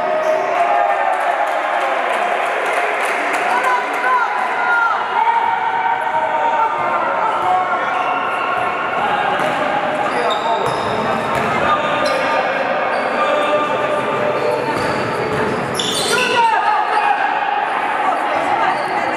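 Basketball game in an echoing sports hall: the ball bouncing as players dribble, with voices calling out across the court. Short squeaks are heard a few times, the clearest near the end.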